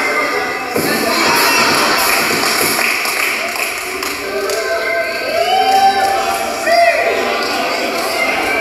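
A group of people chattering and cheering in a large hall, with a thud about a second in and a couple of drawn-out rising-and-falling shouts in the second half.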